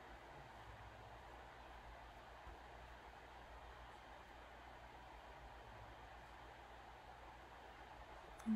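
Near silence: steady room tone with a faint hiss and low hum.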